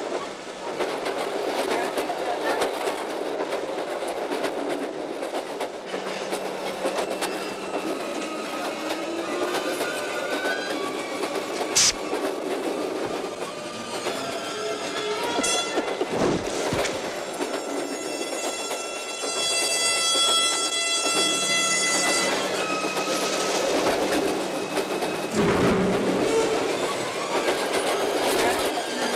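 Passenger train running at speed, heard from inside the carriage: a steady clatter and rattle of wheels and coaches with a sharp click about twelve seconds in. About nineteen seconds in, a high steady tone rings out for some three seconds.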